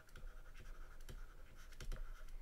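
Faint, irregular scratching and light tapping of a stylus handwriting a word on a drawing tablet.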